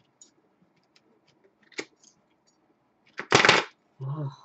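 Tarot cards being handled: scattered light clicks of card edges, a sharper snap a little under two seconds in, then a loud half-second rasp of the deck being shuffled a little over three seconds in.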